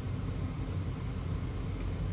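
Steady low rumble of room background noise in a lecture hall, with faint hiss above it and no distinct events.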